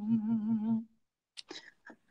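A man's chanting voice in Khmer smot style holds a long note with a wavering vibrato and fades out within the first second. Then near silence, broken by a few faint short sounds.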